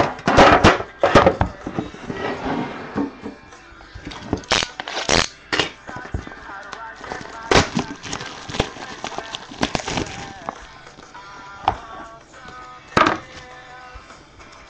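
Cellophane wrap crinkling and a hard plastic case clicking as a trading card box is unwrapped and opened by hand. The handling comes as a run of short, sharp crackles and clicks. Faint background music plays under it.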